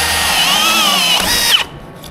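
Milwaukee M18 cordless drill driving a three-inch hole saw through wooden wall framing, the motor's whine dipping in pitch under load. It stops about one and a half seconds in as the saw cuts through.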